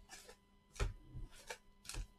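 Sealed card packs and cardboard hobby boxes being handled and set down on a table: four short knocks and rustles, the loudest about a second in.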